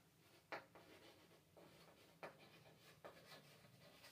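Chalk writing on a blackboard: faint scratching of the strokes with a few short, sharper taps, about half a second in, a little after two seconds and around three seconds.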